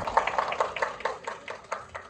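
Small audience applauding, many hands clapping quickly and thinning toward scattered claps near the end.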